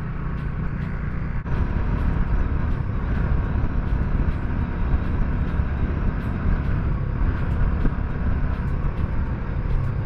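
Royal Enfield Bullet motorcycle ridden at speed: a steady loud rush of wind over the microphone, with the engine running underneath.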